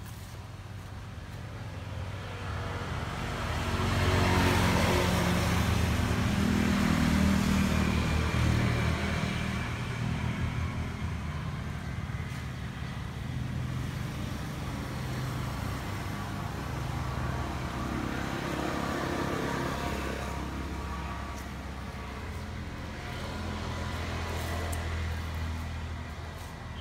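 An engine running steadily, growing louder about three to four seconds in and then holding.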